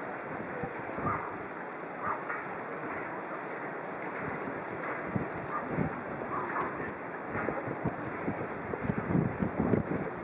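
Wind blowing across the microphone, a steady rushing with irregular buffeting thumps that get stronger near the end.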